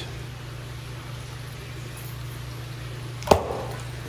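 A large pond fish strikes floating pellets at the water's surface with a single sharp splash about three seconds in, over a steady low hum.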